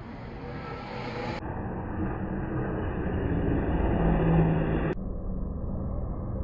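Formula 1 cars' V6 turbo-hybrid engines running along the pit straight, heard from high in the stands, the sound swelling to a peak a little after four seconds in. The sound changes abruptly about a second and a half in and again near five seconds.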